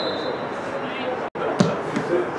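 A football kicked on a free kick: one sharp thud about one and a half seconds in, over background voices of players and spectators.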